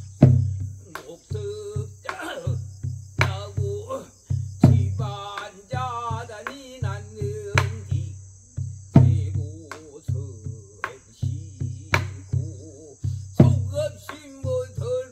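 Korean traditional singing (sori) in a wavering voice with heavy vibrato, accompanied by a buk barrel drum struck with a stick and palm in a repeating rhythmic cycle, with a loud accented stroke about every four and a half seconds.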